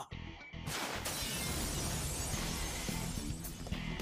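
Anime episode soundtrack: music, with a sudden loud crash-like noise effect cutting in under a second in and holding on over it.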